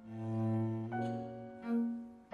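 Cello and piano playing classical chamber music. A low bowed cello note swells in and is held for about a second and a half under higher notes, then a new note swells in near the end.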